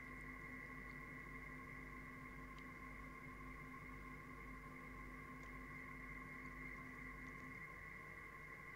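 Faint, steady hum made of a few held tones, with the lowest tone dropping out shortly before the end.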